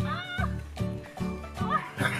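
Background music with a steady beat. Over it come two short high cries that rise and fall in pitch, one just after the start and a shorter one near the end.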